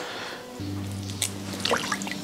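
A low held note of background music comes in about half a second in. Under it are a few soft wet squishes and drips from dripping bracken fern shoots being handled over a basin.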